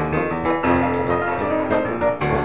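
Background music played on piano, a run of sustained notes and chords that change every few tenths of a second.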